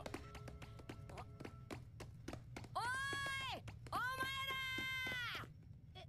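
Anime soundtrack audio: background music with a quick run of taps, and two long held tones about three and four seconds in.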